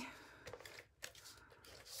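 Faint, soft rustles and light taps of cardstock being handled and slid on a craft mat.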